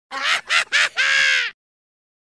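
Cartoon bird honking sound effect: four quick honks, the last one the longest.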